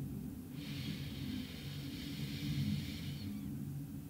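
A woman's slow breath through the nose, heard as a soft hiss that starts about half a second in and lasts nearly three seconds, over a faint low hum.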